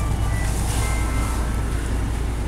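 Steady low vehicle rumble heard inside a stopped car's cabin, even in level throughout.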